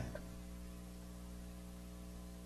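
Low, steady electrical mains hum: a stack of evenly spaced tones over faint hiss.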